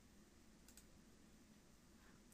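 Near silence: faint room tone with a single faint computer-mouse click under a second in.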